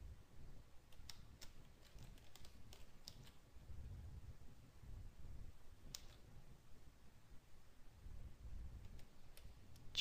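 Faint, scattered clicking of a computer keyboard and mouse, a quick cluster of clicks between about one and three seconds in, then single clicks near six seconds and near the end, over a low steady room hum.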